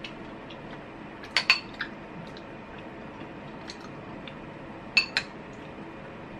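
A ceramic soup spoon clinking against a glass bowl of ginger-syrup dessert: a quick run of three ringing clinks about one and a half seconds in, and two more near five seconds.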